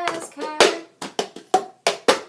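Cup-song rhythm played with a plastic party cup: hand claps and the cup slapped and tapped on a countertop, about five sharp hits, the first the loudest.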